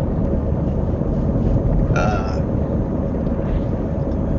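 Minivan driving at about 40 mph, heard from inside the cabin: a steady low road and engine rumble. A brief vocal sound comes from the driver about two seconds in.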